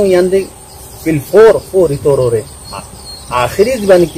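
A man speaking in short phrases, over a steady high-pitched chirring of insects such as crickets.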